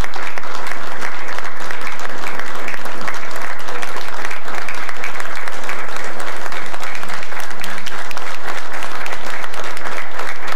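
A roomful of people applauding steadily.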